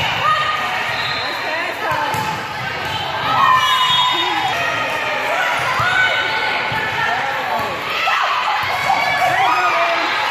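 A volleyball being played during a rally on an indoor court, with the ball struck several times and players and spectators calling out over it, echoing in a large gym.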